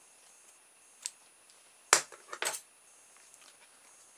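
Scissors cutting a rubber band: one sharp snip about halfway through, with a faint click before it and a few small clicks just after from the blades and handling.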